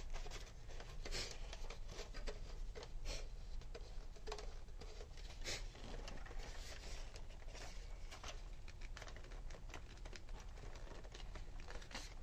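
Hard plastic toy blaster parts being handled and fitted together: scattered light clicks, taps and rustles.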